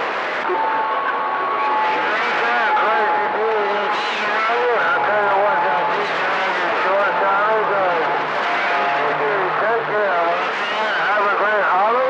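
CB radio receiving distant skip signals on channel 28: several far-off voices overlap and come through garbled and unintelligible in static, with steady heterodyne whistles from carriers beating against each other.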